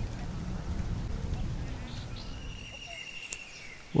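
Outdoor ambience: an uneven low rumble of wind on the microphone, with faint bird calls in the second half.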